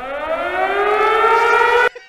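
A siren sound effect preloaded in a DJ sampler app: one wail rising steadily in pitch, cut off suddenly near the end.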